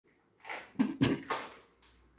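Four short, breathy sounds from a man's mouth, muffled by the half-face respirator mask held over it, coming in quick succession within about a second.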